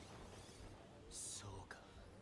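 Near silence: faint room tone, with a brief soft whisper-like hiss about a second in.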